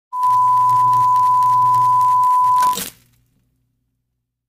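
Television test-pattern tone effect: a steady high-pitched beep over crackling static and a low buzz, cut off about two and a half seconds in by a brief burst of static.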